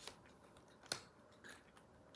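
A person chewing pizza close to the microphone: faint mouth noises with a few sharp crunches, the loudest about a second in.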